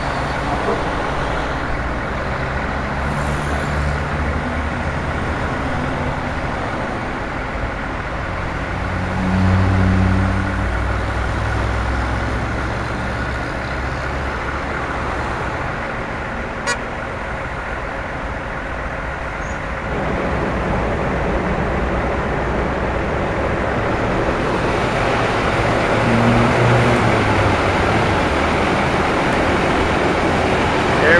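Highway traffic noise in stopped traffic: idling and slowly moving vehicle engines under a steady road rumble. A heavy engine's low drone swells briefly about ten seconds in, and there is a single sharp click about two-thirds of the way through.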